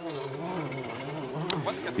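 A person's voice talking, quieter than the commentary around it.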